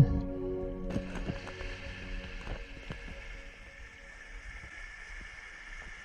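Background music ending about a second in, followed by the soft wash of small waves lapping on a sandy shore, growing fainter.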